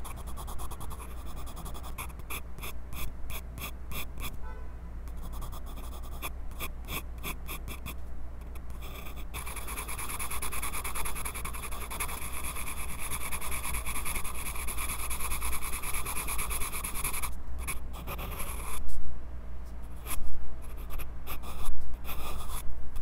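Graphite pencil sketching on sketchbook paper, heard close up through a clip-on microphone fixed to the pencil. Short scratchy strokes come in quick runs, then about eight seconds of continuous rapid back-and-forth shading. A few louder strokes follow near the end.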